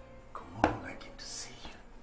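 Soft whispered speech, with a short sharp click a little over half a second in and a brief hiss near the middle.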